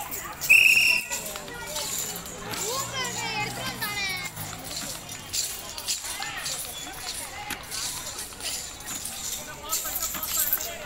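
Background chatter of children and onlookers, with one short high whistle about half a second in, the loudest sound.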